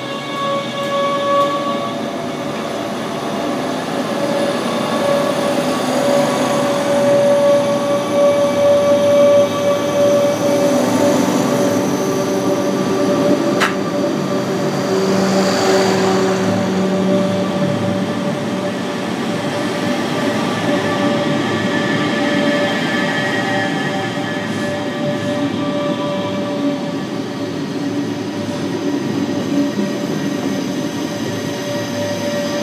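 DB Class 425 electric multiple unit rolling past along a station platform, its electric traction equipment giving a steady whine over the rolling noise of the wheels. There is a brief sharp click about halfway through.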